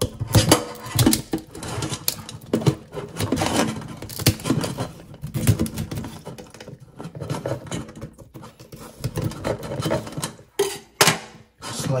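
Small knife and hands working at the underside of a live Dungeness crab in a stainless steel sink: an irregular run of clicks, taps and scrapes of blade and hard shell against shell and steel.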